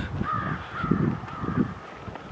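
A bird calling faintly in a drawn-out, wavering call, over low soft thumps of footsteps and camera handling.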